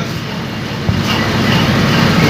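Steady rumbling background noise of a crowded hall during a pause in speech, with one short click about a second in.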